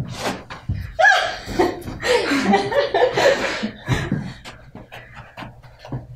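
Women panting hard with exertion while grappling, in heavy breathy bursts mixed with short strained voice sounds, busiest from about a second in to halfway through.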